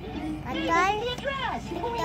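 A young girl talking in a high, childish voice, her words not clear enough to make out.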